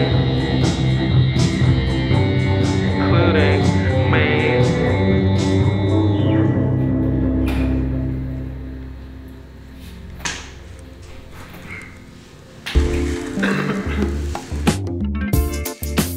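Post-punk rock song with a drum machine beat, keyboard, bass and guitar, fading out about halfway through. Near the end, different music starts abruptly.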